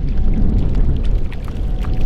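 Wind rumbling on the microphone, loud and gusting, with scattered small water splashes and ticks over it.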